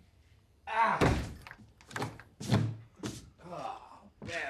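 A man's wordless vocal sounds, broken up by several thuds; the loudest thud comes about a second in.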